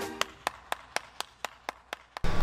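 One person clapping hands alone, a steady slow clap of about four claps a second, while music fades out at the start.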